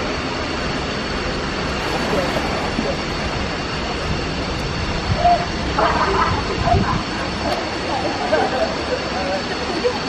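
Steady roar of a waterfall pouring into a rock-walled jungle swimming hole.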